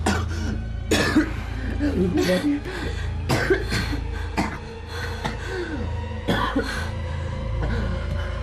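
Short, repeated wordless vocal bursts, like coughs or throat-clearing, over background music.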